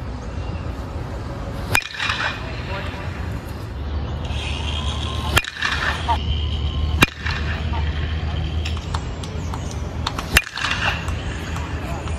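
Louisville Slugger Select PWR, a two-piece hybrid BBCOR bat, hitting batting-practice pitches: four sharp impacts, about two, five, seven and ten seconds in, over a steady low rumble.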